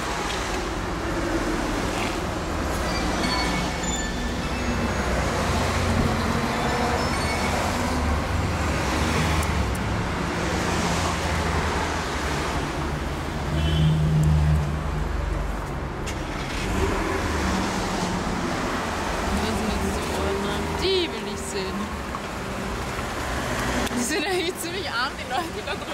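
Street traffic: a continuous rumble of passing cars, swelling loudest about fourteen seconds in.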